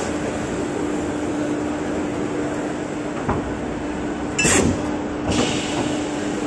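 Guillotine paper cutter running with a steady hum. A light click comes about three seconds in, then the blade comes down through the paper stack with a loud, sharp burst about four and a half seconds in, followed by a shorter clack just under a second later.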